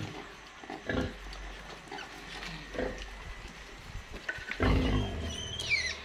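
Sow and her nursing piglets in a farrowing pen: a few short grunts, then a louder, deeper grunt a little before the end, followed by high, wavering piglet squeals.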